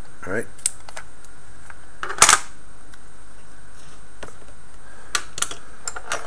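A short rasp about two seconds in as a strip of Tamiya masking tape is pulled from its dispenser and torn off, among a few light clicks and taps of handling on the workbench.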